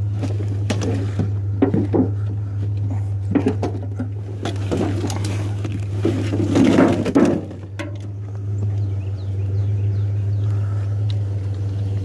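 Junk being rummaged and moved about in a curbside scrap pile: irregular knocks, clatter and scraping of items being handled, busiest for a moment just past the middle. Under it runs a steady low hum.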